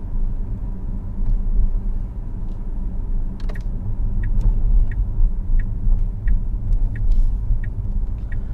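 Steady low road and tyre rumble heard inside the cabin of a Tesla Model S driving at low speed, with no engine note. From about halfway in, a light regular ticking about every two-thirds of a second joins it.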